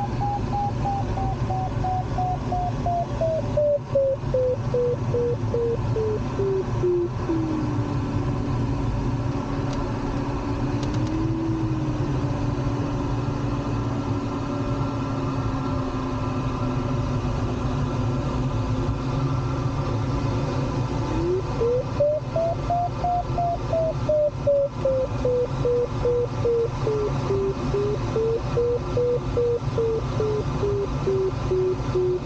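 Glider's audio variometer tone over steady airflow noise in the cockpit. The tone beeps high, slides down over the first seven seconds to a steady low tone, then about twenty-one seconds in rises sharply and beeps again, wavering up and down in pitch. The pitch follows the climb rate: high beeps in rising air of the thermal, a low steady tone while sinking.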